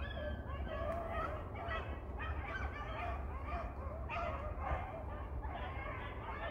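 A pack of rabbit-hunting hounds baying together, their overlapping calls running on without a break.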